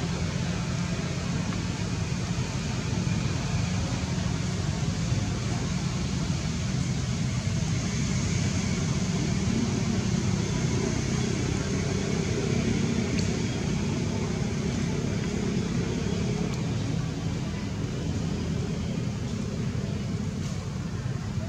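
Steady outdoor background noise: an even low rumble like distant traffic, with indistinct voices mixed in.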